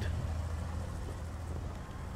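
A vehicle engine idling steadily as a low, even hum, left running to warm up in the cold.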